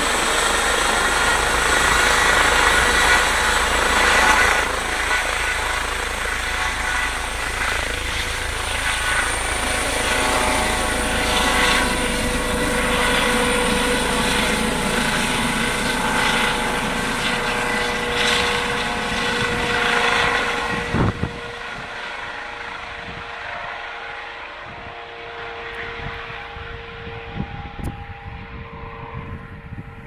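Twin-turbine Eurocopter EC135 air-ambulance helicopter running at full power, with a high turbine whine over the rotor noise, as it lifts off and flies overhead. About two-thirds of the way through, the sound drops abruptly to a much quieter, steadier level with a single steady tone.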